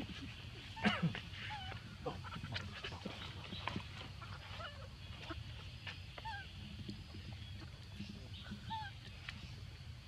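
Short squeaks and chirps of a baby macaque, repeated throughout, with a louder call about a second in, over a steady low rumble.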